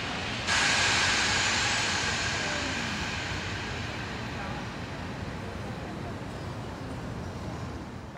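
Outdoor background noise heard from a high overlook: a steady hiss of distant city and park activity that swells about half a second in and slowly fades, with faint far-off voices.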